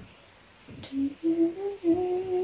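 A woman humming a few held notes, starting about a second in, with the pitch stepping up from note to note.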